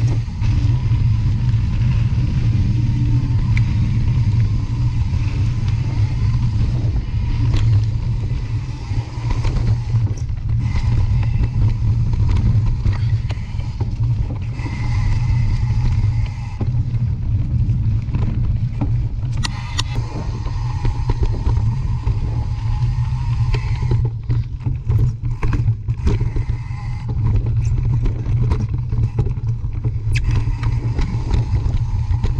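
A mountain bike ridden along a dirt and leaf-litter trail, heard through the rider's camera microphone as a steady, loud low rumble with scattered short clicks and rattles, more of them in the second half.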